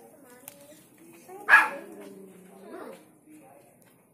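A dog barking: one loud, sharp bark about a second and a half in, amid people's voices.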